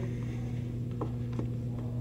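A steady low hum with two faint, soft clicks about a second in, as a 4-inch LED tail light is pushed back through its rubber grommet into the Jeep's conversion plate.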